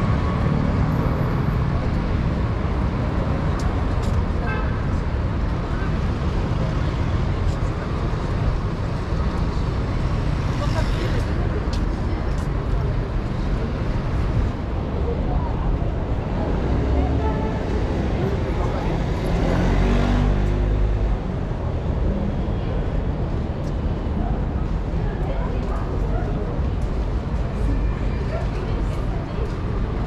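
City street traffic: a steady din of cars and motor scooters, with one engine passing close a little past the middle, its pitch rising and falling, and voices of passers-by.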